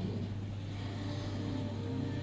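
A steady low hum under a faint even hiss, with no distinct events.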